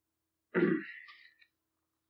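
A man clearing his throat once, a short harsh burst about half a second in that fades away quickly.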